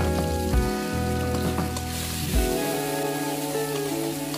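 Chopped chilies and garlic sizzling in hot oil in a wok, a steady hiss, under background music with long held notes.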